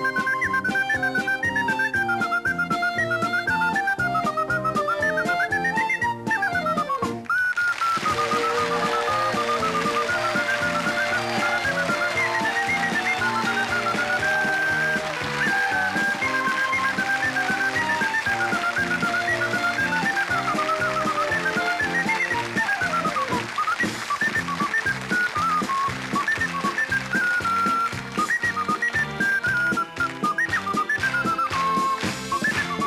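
Ocarina playing a lively Romagna polka, a quick high melody with fast runs and downward slides, over a steady rhythmic accompaniment. From about eight seconds in, the studio audience claps along under the tune.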